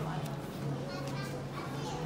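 Faint, indistinct chatter of other shoppers in a store, over a steady low hum.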